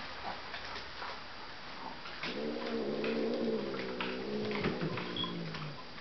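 A dog giving one long, low whine lasting about three and a half seconds. It starts about two seconds in and sinks in pitch at the end.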